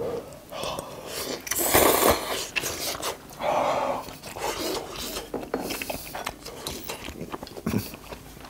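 A man slurping udon noodles and chewing, in several short noisy slurps and bites.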